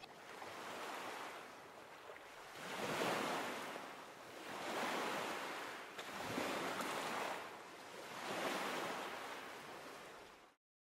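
Gentle waves washing in against a shore, swelling and fading in slow surges about five times.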